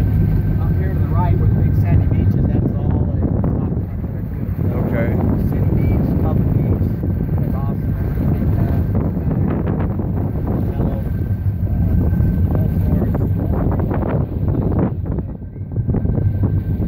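Motorboat underway on open water: its engine runs with a steady low hum, under the rush of wind on the microphone and water along the hull.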